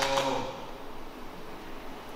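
Faint, steady background hiss of a quiet room, after a steady pitched sound dies away in the first half second.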